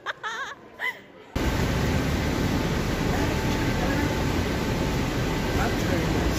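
A cut to the loud, steady running noise of a city bus heard from inside, starting abruptly about a second in. Before it, a brief faint wavering tone.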